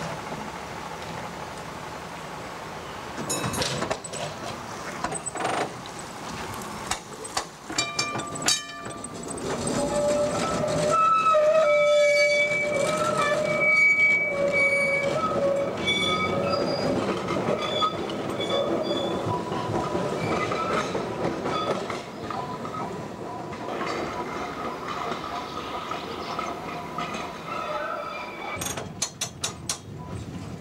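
Vintage electric tram running on street track. Its wheels click and knock over rail joints and points, then give a high squeal at several pitches for several seconds, over steady running noise.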